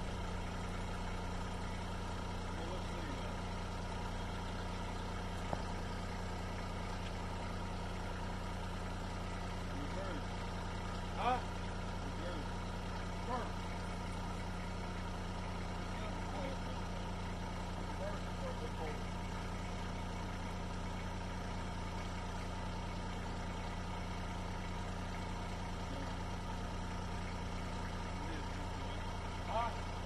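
Compact tractor engine idling steadily, a constant low hum.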